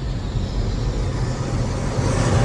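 Cinematic logo-intro sound design: a deep low rumble under a swelling whoosh that grows brighter toward the end.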